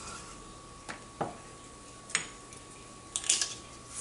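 Light clicks and knocks of small spice jars and a shaker being handled and set down on a kitchen counter: a few separate taps, then a quick cluster near the end, over a faint steady high tone.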